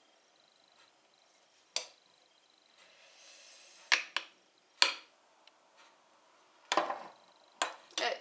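About half a dozen sharp clinks and knocks of a metal spoon and a drinking glass against a glass mixing bowl, with a faint soft pour of thick blended yogurt drink from the glass into the bowl about halfway through.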